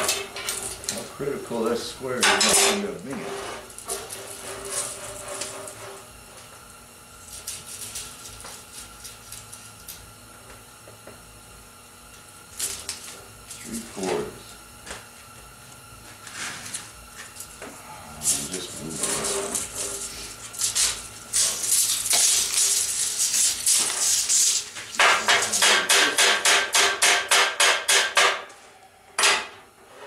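Steel rods and tools clanking on a steel welding table: scattered sharp metallic clanks, a few seconds of rough steady noise about two-thirds of the way in, then a rapid run of evenly spaced metal strikes, about four a second, near the end.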